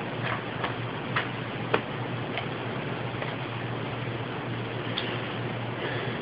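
Quiet church sanctuary: steady hiss and a low hum with a few scattered light clicks and taps from the seated congregation, the sharpest close to two seconds in.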